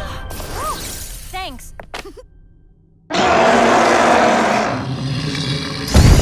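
Cartoon fight sound effects: a couple of short gliding vocal cries, about a second of near silence, then a sudden loud, harsh noise that eases into a lower rumbling tail, with a loud hit right at the end.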